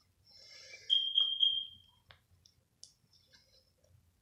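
Plastic action figure and its clip-on wings being handled: soft rustling, then a high squeak about a second long, followed by a few light plastic clicks.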